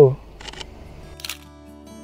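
Two short clicks from a handheld Sony camera, about half a second and just over a second in. Faint background music with steady held notes comes in about a second in.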